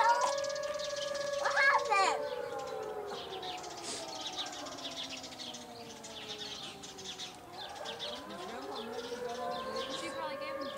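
Outdoor warning siren wailing: its tone holds, slides down in pitch over several seconds, then rises again near the end.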